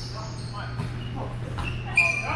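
Indoor volleyball play in a large gym: players' voices calling out faintly over a steady low hum. Near the end comes a short, high sneaker squeak on the hardwood floor.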